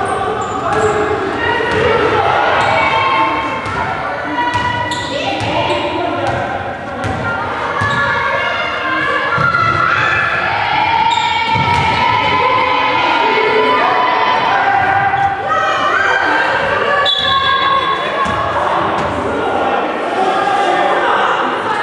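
Basketball game in a large reverberant gym: a ball bouncing on the hardwood court, with voices calling out across the hall throughout.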